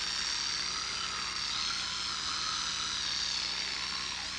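Electric toothbrush running in use, a steady high buzz whose pitch wavers slightly.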